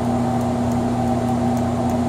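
Steady hum of a running PDP-12 minicomputer's cooling fans and power supply: an even whir with a low steady tone.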